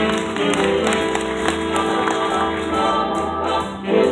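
Big band playing live: saxophones and brass sound held chords over a steady beat.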